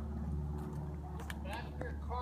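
A steady low hum with a few faint clicks, and a brief pitched sound, like a voice, about one and a half seconds in.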